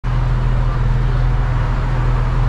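Audi S5's turbocharged V6 engine idling steadily, loud and low-pitched, through its quad-tip exhaust.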